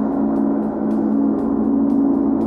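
Large bronze gong played with a soft felt mallet in a steady stream of light strokes, about two a second, keeping up a continuous low, humming drone.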